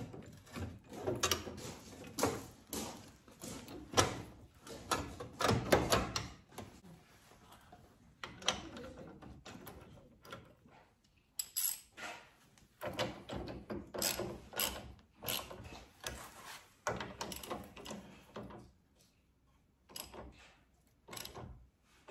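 Irregular metallic clicks and knocks as a winch fairlead and license-plate bracket are fitted to a bumper winch mount, with runs of quick clicking from a socket ratchet turning the mounting bolts.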